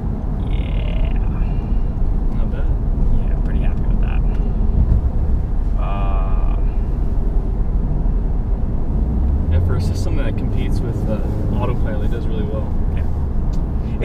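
Steady road, tyre and engine noise inside a Toyota car's cabin at highway speed.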